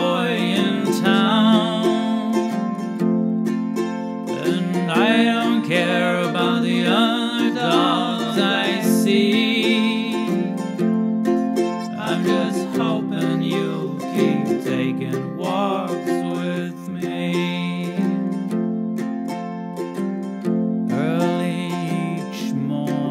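Instrumental passage of a song led by a waldzither, a steel-strung Thuringian cittern, plucking a quick melody over a steady accompaniment.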